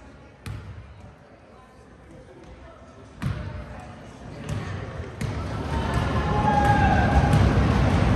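A basketball bouncing on a hardwood gym floor, a handful of separate bounces as the ball is dribbled before a free throw. The voices of spectators and players grow louder from about halfway through.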